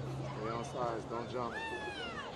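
High-pitched voices shouting across a football field: several short calls, then one long falling call near the end. A low steady hum runs underneath and stops about one and a half seconds in.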